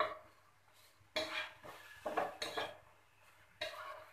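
Flat spatula knocking and scraping against a non-stick frying pan as a paratha is pushed around and lifted: a sharp tap at the start, then three short bouts of scraping.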